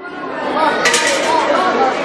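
A group of schoolchildren chattering together in a room, many voices overlapping, with a short sharp sound about a second in.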